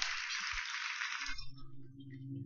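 Soundtrack of a projected video-mapping show playing through room speakers: a hissing whoosh that stops about one and a half seconds in, then a low, sustained ambient music drone.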